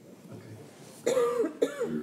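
A man coughs twice about a second in, with a voiced, throaty edge to each cough.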